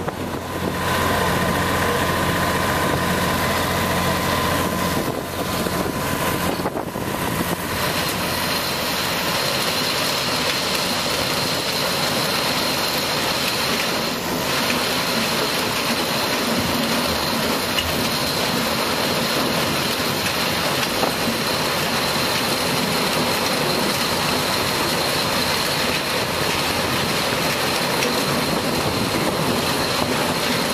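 Diesel engines of sugarcane harvesting machinery running steadily close by, a dense, continuous machine noise. A faint high whine joins about eight seconds in.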